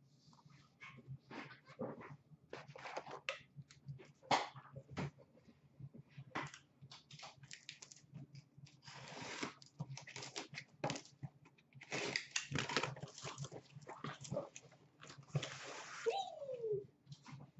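Cardboard shipping cases being handled: scattered knocks and taps as the boxes are lifted and set down, with stretches of cardboard rubbing and scraping about nine seconds in, again around twelve seconds, and near the end.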